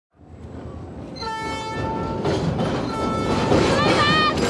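Diesel locomotive sounding a chorded horn in two long blasts of about a second each, over the steady rumble of the moving train. The sound fades in at the start, and a wavering high tone comes in near the end.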